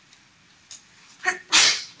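A person sneezing once near the end: a short intake, then a loud noisy burst lasting under half a second.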